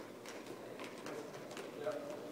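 Juggling clubs being caught and thrown in a club-passing pattern: a quick, uneven run of sharp smacks as the handles slap into the jugglers' hands. A voice comes in near the end.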